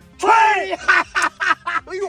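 Men's voices: a drawn-out exclamation about a quarter second in, followed by quick, choppy bursts of laughter and shouting.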